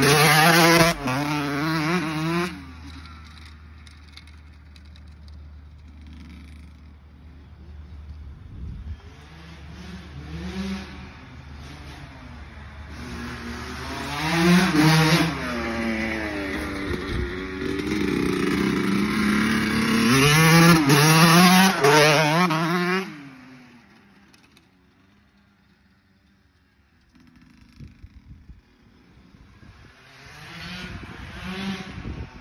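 Small dirt bike engine revving up and down as it rides around. It is loud at first, fades for several seconds, builds back to its loudest about fifteen and twenty seconds in, then drops away near the end.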